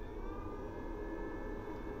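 EAFC Narzrle 3000W pure-sine-wave inverter starting up under a 500 W heater load: a faint, steady high whine over a low hum, rising a little in pitch in the first half second before levelling off.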